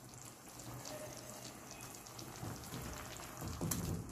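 Sauce sizzling and crackling softly in a nonstick pan around freshly added baked chicken wings, with a few soft knocks near the end as a silicone spatula starts stirring.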